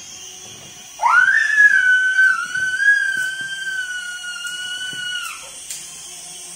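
Small toy RC helicopter's motor and rotor whirring at a high pitch as it climbs. About a second in, a loud, high-pitched squeal rises sharply, holds for about four seconds and drops away.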